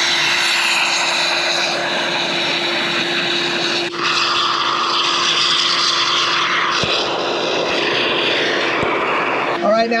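A can of expanding foam sealant hissing steadily as it sprays through its straw applicator, filling a rat entry hole. There is a brief break about four seconds in, and the hiss changes slightly near seven seconds.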